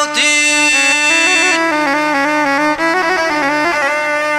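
Albanian folk instrumental passage: a çifteli playing a stepping melody over a steady drone.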